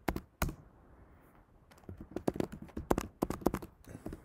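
Computer keyboard keystrokes: two taps near the start, then a quick run of typing in the second half.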